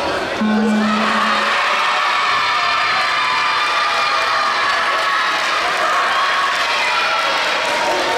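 A crowd of young spectators in a sports hall cheering and shouting without let-up. About half a second in, a low steady buzzer tone sounds for about a second, marking the end of the round.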